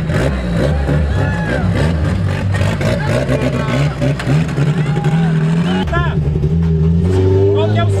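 Turbocharged VW AP four-cylinder engine of a Chevrolet Chevette drift car running at low speed, its revs climbing twice in the second half.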